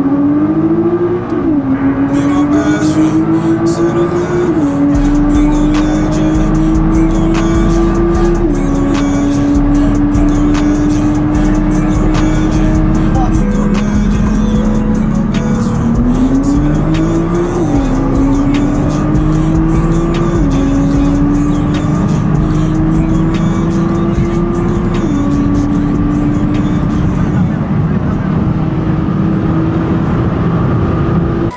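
A car engine under hard acceleration through the gears in two pulls. Its pitch climbs slowly and then drops sharply at each upshift, about seven shifts in all, with a lift near the middle before the second pull. A music track with a beat and a steady road rumble run underneath.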